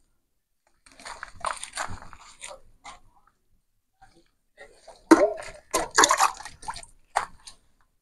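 Liquid sloshing and splashing as it is poured from a small can onto the soil at the base of tomato plants. It comes in two spells, about a second in and again from about four and a half seconds in, the second louder.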